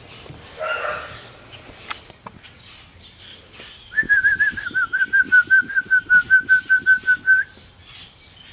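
A Chinese Crested Powder Puff puppy giving a run of about twenty quick high yips at a near-steady pitch, some six a second, starting about halfway through and lasting three and a half seconds, with a brief lower cry just before one second in.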